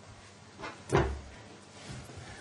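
Two soft knocks close together about a second in, the second with a dull low thud, as of something bumped on a wooden desk near the microphone, over quiet room tone.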